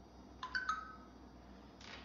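Three short ringing tones in quick succession, each struck sharply and fading within a fraction of a second, about half a second in; a brief soft rustle follows near the end.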